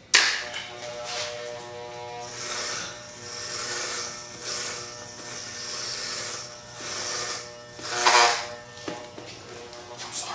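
Electric hair clippers running with a steady buzz, the rasp and pitch shifting as the blades move through hair. A louder burst comes about eight seconds in.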